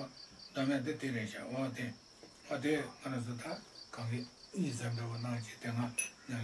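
A man talking in short phrases with pauses, over a cricket's steady, high-pitched pulsing chirp.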